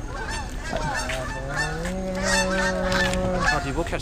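A flock of geese honking as they fly over, many calls overlapping, with one longer held call about halfway through.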